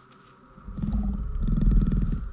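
Deep, rough creature growl, typical of the horned Terror Dogs flanking Gozer. It starts about half a second in and swells in two surges, loudest near the end.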